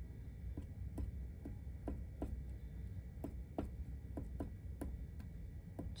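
Faint, fairly regular light ticks, about two or three a second: the tip of a fine-tip glue bottle tapping on paper as small dots of glue are placed.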